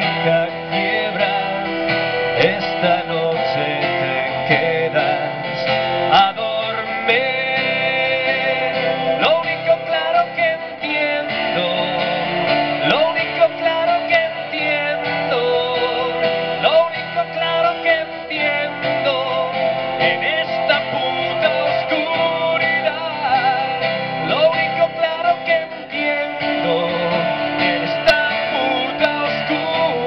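Live band music led by a strummed acoustic guitar, playing steadily.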